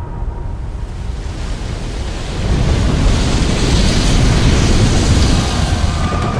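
Film sound effects of a huge ocean wave: a deep rumble under a rushing, surf-like noise that swells louder about two and a half seconds in.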